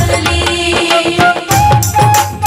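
Instrumental passage of a Hindi devotional bhajan: a steady hand-drum beat under a held melody line. The beat drops out briefly and the melody moves higher about one and a half seconds in.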